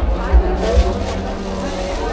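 Voices of a busy market over the steady hum of a nearby vehicle engine that sets in at the start, with two low thumps in the first second.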